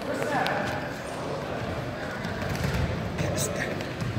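Indistinct voices echoing in a school gymnasium, with a few dull thuds in the second half.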